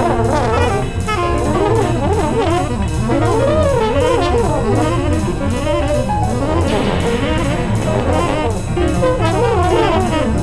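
Contemporary jazz ensemble playing, with saxophone and brass: many lines slide up and down in pitch over steady low notes, dense throughout.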